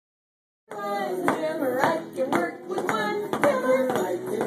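Plastic toy hammers tapping on a steady beat, about two taps a second, under a voice singing a children's action song. The sound begins abruptly just under a second in.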